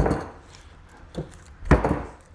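Dull thuds as a Harley Sportster 39mm fork tube is pushed down hard into its slider, a collar of wrapped duct tape knocking the new oil seal into place. The thuds come as a loud one at the start, a faint one about a second in, and another loud one near the end.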